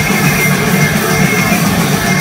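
Live heavy metal band playing loud and without a break: distorted electric guitars, bass guitar and drums.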